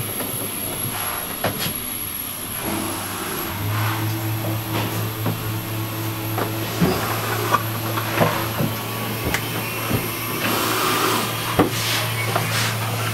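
Boatbuilding work noise inside a yacht's hull under construction. A steady low machine hum sets in a few seconds in, under scattered knocks and taps from fitting-out work.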